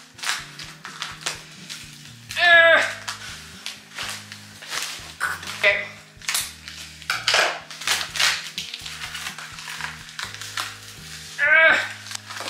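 Taped plastic mailer bag crinkling and rustling as it is handled and cut open with scissors, in a run of short sharp crackles, over soft background music.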